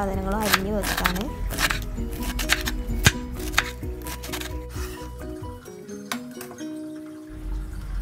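Chef's knife chopping through a cabbage onto a wooden cutting board, a string of crisp chops, over background music of a simple melody of short notes.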